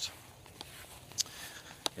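A pause between spoken sentences: faint outdoor background noise with two short clicks, one about a second in and one near the end.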